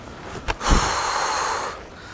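A sharp click and a low thump about half a second in, then a person breathing out hard, close to the microphone, for about a second.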